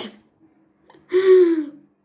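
A single short, breathy vocal sound from a person, falling slightly in pitch and lasting under a second, about a second in.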